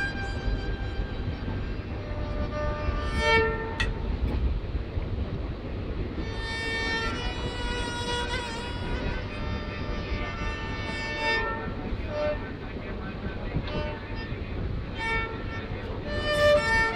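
A homemade sarangi-style bowed fiddle playing a melody in short phrases of held notes, with pauses between them. A moving train's steady rumble runs underneath.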